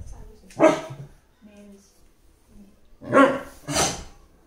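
Beagle barking in protest at being disturbed: one sharp bark about half a second in, then two close together near the end, with quieter grumbles between.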